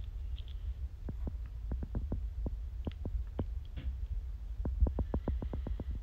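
Low, steady rumble of wind buffeting a handheld phone's microphone, with many faint, irregular clicks that come thickest about five seconds in.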